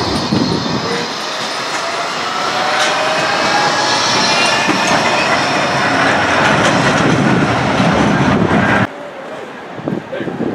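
Blackpool Bombardier Flexity 2 tram moving off and passing close by on the street rails, its motors giving a rising whine over the rumble of the wheels. The sound cuts off suddenly near the end, leaving quieter street noise.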